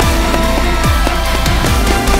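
Loud background music with a steady drum beat and deep bass notes that slide downward.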